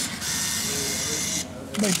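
Slot machine's banknote dispenser whirring steadily as it pays out a 20-euro note, stopping abruptly about a second and a half in.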